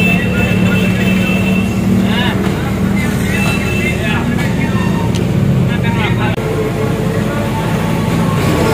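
Street background noise: motor vehicle engines running steadily close by, with indistinct voices.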